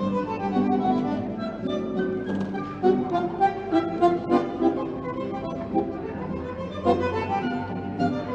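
Dance music from a small ensemble: violins with an accordion-like reed instrument, sustained phrases broken by a run of sharp accented notes in the middle.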